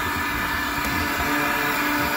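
Electric heat gun blowing steadily with a continuous fan whir, thawing a frozen metal water pipe and valve.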